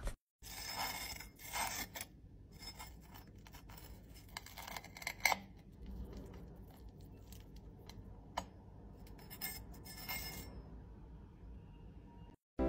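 Faint scraping and crackling of a knife cutting into a crisp pan-fried halloumi slice on a plate, with a few sharp clicks of the blade against the plate.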